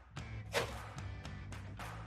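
Quiet background music, with a few short, light knocks and rustles of objects being handled, the clearest about half a second in.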